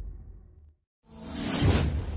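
A low music bed fades out into a moment of silence. About a second in, a loud whoosh sound effect swells up and peaks near the end with a low rumble underneath, the transition sting of an animated news-logo intro.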